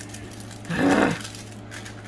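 A woman's short wordless groan, loud and about half a second long, about a second in, following her annoyance at the cellophane tearing. A steady low electrical hum runs underneath.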